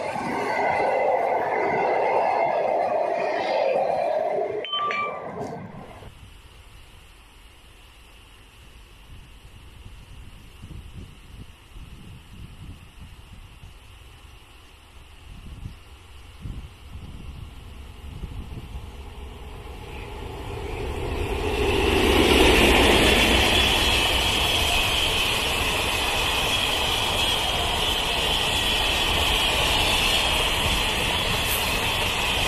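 Railway train passing close by, its wheels rumbling and clattering on the track, ending abruptly about six seconds in. After a quieter stretch, a long-rail transport train with flatcars carrying steel rails swells in from about 21 s and rolls past loudly and steadily.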